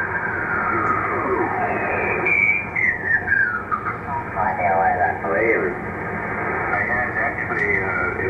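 Icom IC-7300 transceiver's speaker audio as its tuning knob is turned down through the 40-metre band in lower sideband: mistuned SSB voices slide in pitch and come and go over steady band noise. The sound is clipped to the narrow voice passband, giving it a thin, radio-like tone.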